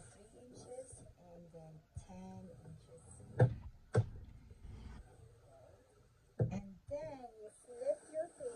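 Quiet, indistinct speech with two sharp knocks about half a second apart near the middle, and another a little later, from a plastic scoring stylus and hands working a sheet of paper on a scoring board.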